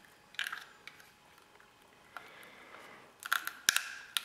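Coaxial cable and its stripped wires being pushed by hand into a plastic aerial dipole junction box: faint plastic and wire clicks and scrapes, a few ticks about half a second in and a quick run of sharp clicks near the end.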